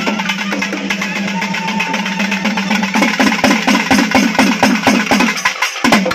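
Loud festival drumming over a steady held low tone. About halfway through, the beat turns into strong, even strokes at about four a second, breaks off briefly near the end, and then comes one sharp hit.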